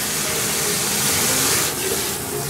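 Sink faucet running steadily, its stream of water pouring into a fabric aquarium filter sock held under the tap to rinse out debris.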